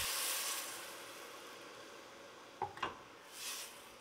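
Water poured onto hot caramelized onions and spices in a stainless steel pot sizzles, hissing loudest at first and dying away over about two seconds. Near the end come two light knocks.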